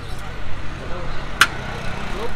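Roadside traffic rumbling steadily under faint background chatter, with a single sharp click about one and a half seconds in.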